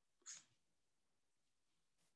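Near silence on a video call, with one brief faint noise about a quarter second in.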